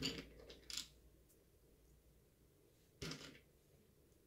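Dried fava beans set down one at a time on a paper sheet on a table: faint, short clicks, two in the first second and another about three seconds in.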